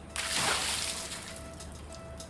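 A bucket of water dumped over a person's head: a sudden splash just after the start that trails off over about a second.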